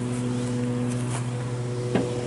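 Steady low machine hum with a few evenly spaced overtones, unchanging throughout, with a short click near the end.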